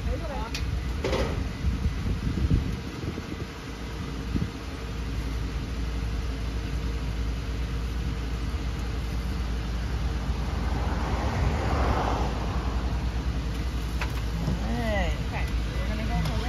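School bus engine idling with a steady low hum while the bus's wheelchair lift platform is lowered to the ground, with a short knock about a second in and a brief rushing noise about two-thirds of the way through.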